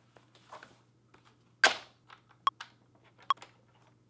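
Software metronome count-in: four clicks a little under a second apart, the first one accented, over faint clatter of handling and a low steady hum.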